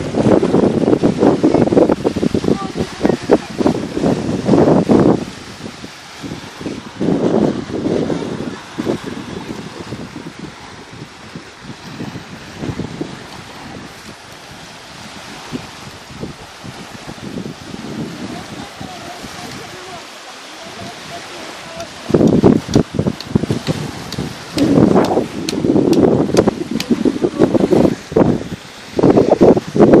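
Wind buffeting the microphone in loud gusts for the first few seconds and again through the last third, with quieter sea wash in between.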